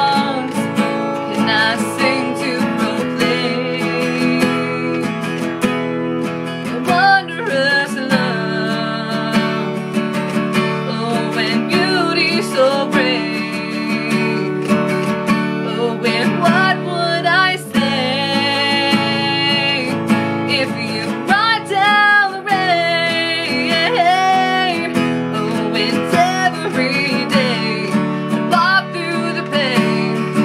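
A woman singing a slow song while strumming an acoustic guitar, holding some notes with a waver in her voice.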